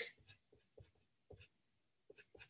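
A pen writing on paper: a handful of faint, short scratching strokes.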